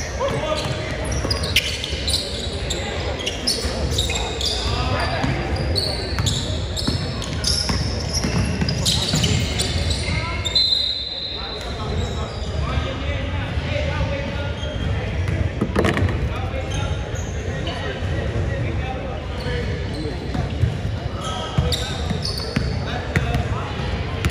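Basketball being dribbled and bounced on a hardwood gym floor, with sneakers squeaking and players calling out, all echoing in a large hall. A whistle sounds once, held for about a second, about ten seconds in.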